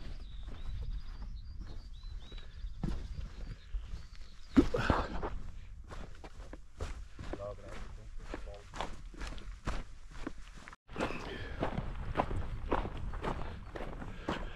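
A hiker's footsteps on a mountain track, in a steady walking rhythm of about two to three steps a second, over a low steady rumble.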